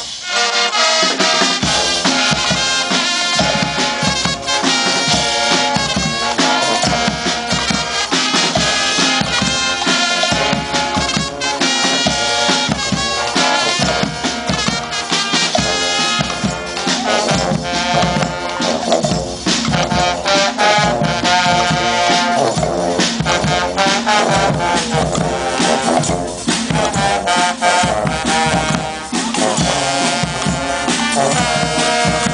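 Guggenmusik brass band playing live: trumpets, trombones, saxophones and sousaphones over a big bass drum. The bass and drums drop out for about a second at the start, then the full band comes back in.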